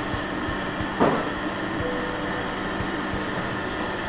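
Steady mechanical hum of restaurant room noise with a low drone, and a brief voice-like sound about a second in.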